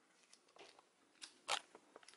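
Quiet handling noise of a plastic fashion doll being waggled in the hand: a few faint clicks, with one sharper click about one and a half seconds in.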